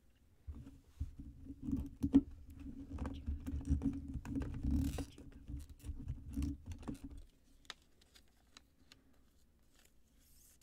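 Hands handling a trading card and its plastic holder close to the microphone: a stretch of rubbing and scraping with many light clicks and a dull rumble, which stops about seven seconds in.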